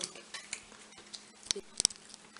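A few small, sharp clicks and clinks from handling things, the loudest pair close together near the end, under a quiet spoken "okay".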